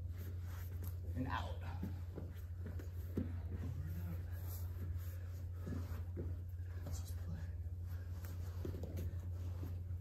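Soft scuffs, shifting and breaths of two grapplers moving over foam mats, with a brief rising squeak about a second in. A steady low hum runs underneath.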